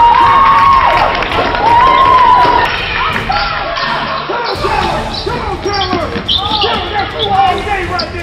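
Basketball game play on a hardwood gym floor: the ball bouncing and players' feet on the court, with voices calling out over it.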